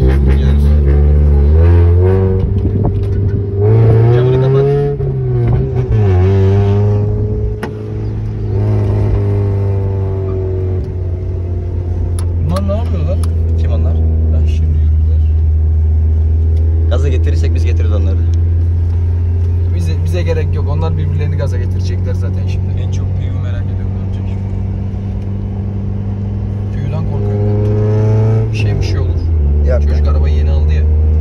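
Honda Civic four-cylinder engine heard from inside the cabin, revving hard under acceleration in the first few seconds, its pitch climbing and dropping a couple of times. It then settles into a steady drone at cruising speed.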